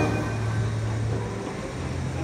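Steady low hum of a fairground carousel's drive machinery as the ride turns, over a faint wash of background noise.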